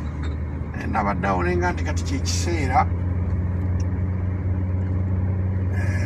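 Steady low drone of a car heard from inside its cabin as it is driven, running evenly with no change in pitch. A man's voice talks over it for the first half.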